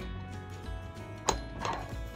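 Background music with steady tones, and a sharp metal click about a second and a quarter in, followed by a lighter one, as a machined shaft-and-bearing assembly is slid by hand into its housing bore.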